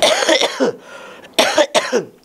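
A man coughing into his fist: a burst of coughs at the start, then two shorter coughs near the end.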